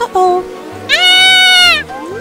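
A child's short exclamation, then a loud, high-pitched shriek held about a second that rises at the start and falls away at the end, over background music.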